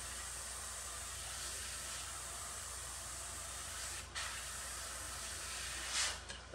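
Airbrush spraying paint onto an RC car body at about 30 PSI: a steady hiss of air and paint, with a brief break about four seconds in.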